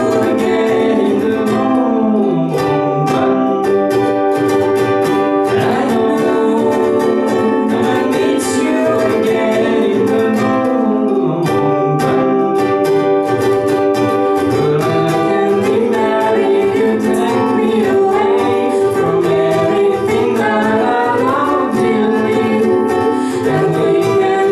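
Two ukuleles strummed together in a live acoustic song, with a woman and a man singing.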